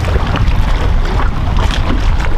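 Strong wind rumbling on the microphone, a steady low buffeting over choppy water.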